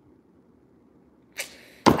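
Near silence with faint room tone. Near the end it is broken by a short breathy rush and then a sharp click, just as speech starts again.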